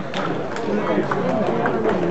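Chatter of several voices in a sports hall, with a few sharp clicks of table tennis balls striking paddles and tables.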